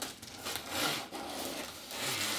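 Scissors cutting through the packing tape along a cardboard box's seam, with a short break about a second in.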